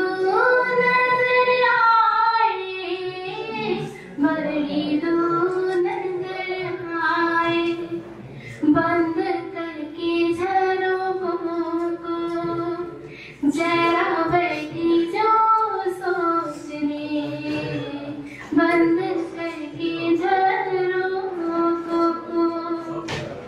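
A woman singing solo into a handheld microphone, in long phrases of held notes with short breaks roughly every four to five seconds.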